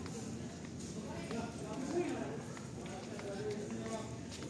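Indistinct chatter of people talking in a large store, with footsteps on a concrete floor.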